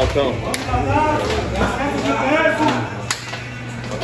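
Indistinct men's voices chattering over music playing in the background, with a sharp tap or two.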